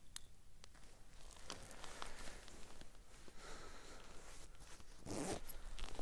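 A zipper being pulled amid the rustle of winter clothing and gear, in short rasps that grow busier, loudest near the end.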